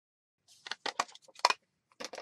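Paper cutout and small crafting tools handled on a cutting mat: a quick run of short rustles and light taps, starting about half a second in.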